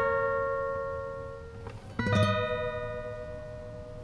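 Background music: acoustic guitar chords struck slowly and left to ring and fade, with a new chord about two seconds in.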